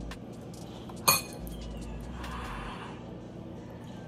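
A metal spoon clinks once against a ceramic bowl about a second in, a sharp, ringing strike, with a few fainter small clicks of eating around it.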